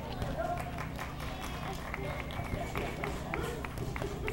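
Boxing-gloved punches landing on focus mitts: a run of sharp smacks at irregular spacing, with background voices.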